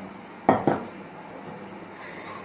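Two quick clinks of china dishes and a spoon being handled, about half a second in, close together.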